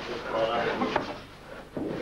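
Voices in a boxing gym mixed with dull thuds of gloved punches landing in close-range sparring. The thuds come with a sharp knock about three-quarters of the way through.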